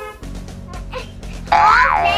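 Background music with steady low notes, then about one and a half seconds in a loud cartoon 'boing' sound effect that swoops up in pitch and back down.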